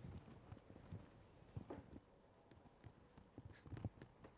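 Faint, irregular taps of a stylus on a tablet screen as words are handwritten.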